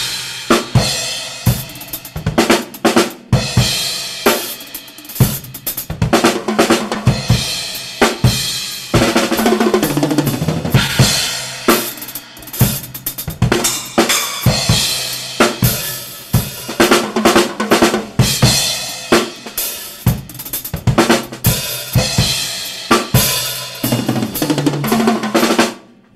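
Solo drum kit played live: busy hi-hat, snare and kick with splash cymbals and tom fills, a rock drum part worked through without other instruments. The playing stops right at the end.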